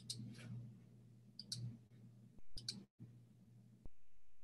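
Faint computer mouse clicks, a few single and paired clicks, as a screen share is being started, over a steady low hum.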